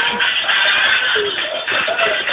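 Background music playing.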